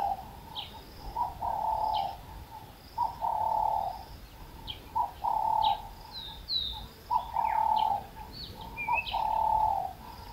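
A dove cooing over and over, each phrase a short note followed by a longer held one, repeating about every two seconds, five times. Smaller birds chirp briefly and high in between.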